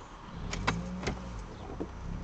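Car cabin hum of the engine, low and steady, coming up a moment in and growing as the car sets off from the traffic light, with a few light clicks on top.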